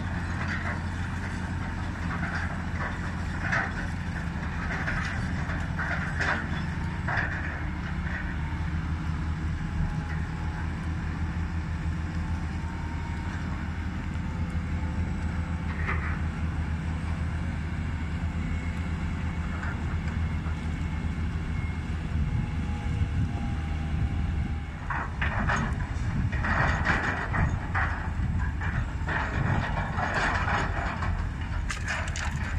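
Crawler crane's engine running steadily under load as it hoists a mechanical rock grapple, with a faint shifting whine and metallic clanks. The clanks are scattered in the first several seconds, and a denser clatter comes near the end.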